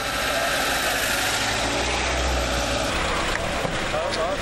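Steady motor-vehicle engine and road noise.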